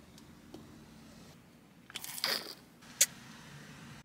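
A small plastic plant pot being pushed into a car's cup holder: a brief crunching scrape about two seconds in, then a single sharp click.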